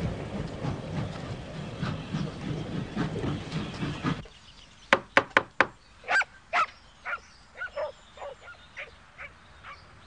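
A dense clattering noise, like hooves and wheels, stops abruptly about four seconds in. About a second later come four sharp knocks on a wooden door. A dog then barks twice, followed by several shorter, quieter calls.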